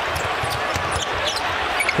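Basketball game in an arena: a steady crowd din with a ball being dribbled on the hardwood and a few short, high sneaker squeaks.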